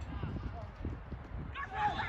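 Voices calling out on a football pitch, with a louder shout starting about one and a half seconds in, over an uneven low rumble.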